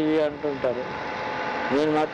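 A man speaking in short phrases, with a pause of about a second in the middle where a steady background noise carries on.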